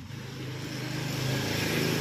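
An engine running steadily in the background, its low hum growing gradually louder.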